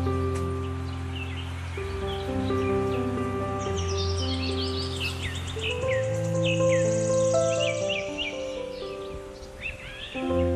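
Calm background music of sustained chord notes, with many small birds chirping over it in quick, falling calls, busiest in the middle.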